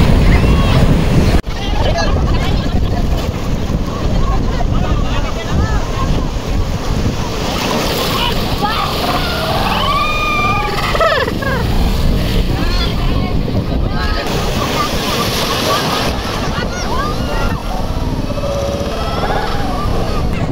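Surf breaking and washing around people wading in the sea, a steady low rumble of waves and wind on the microphone, with shouts and laughter from the bathers, busiest about ten seconds in.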